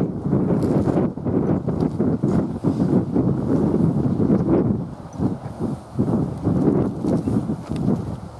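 Wind buffeting the camera microphone: a loud, rough rumbling rush with irregular gusts, easing off somewhat after about five seconds.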